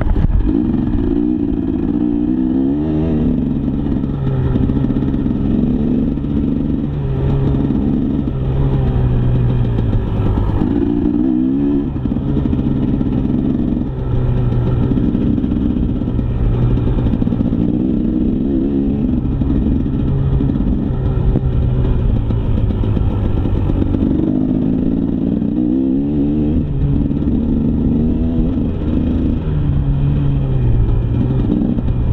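KTM 300 EXC single-cylinder two-stroke enduro engine under riding load, its pitch climbing under throttle and dropping back again and again as the bike is ridden along a dirt singletrack.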